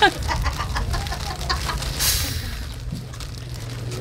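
A man laughing in a run of short, quick bursts over the first couple of seconds, followed by a brief hiss and a low steady hum.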